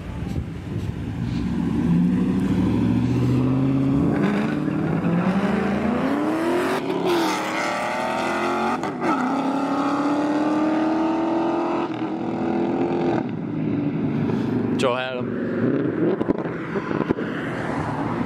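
A Ford Mustang GT's 5.0 Coyote V8 and a Dodge Charger's Hemi V8 launch hard from a standing start and accelerate flat out. The engine note climbs in pitch through about three gear changes, holds, then falls away into the distance about two-thirds of the way through.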